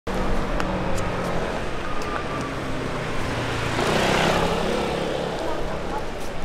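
Road traffic: vehicle engines running, with one vehicle passing close, swelling and fading about four seconds in.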